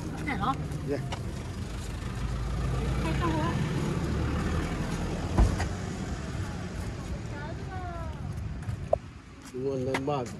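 A motor vehicle's engine running close by, a steady low rumble that grows louder about two seconds in and eases after about six, with faint voices over it. A single sharp knock about five and a half seconds in.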